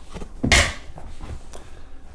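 A single dull thump about half a second in, as a small fluffy dog jumps down from a sofa onto the floor, followed by faint rustling.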